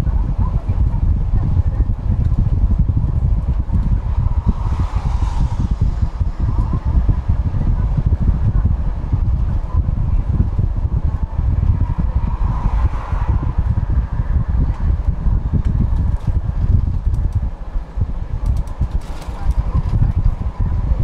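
Steady low rumble of a bus's engine and tyres heard inside the passenger cabin while driving, with two brief rushing swells about five and twelve seconds in.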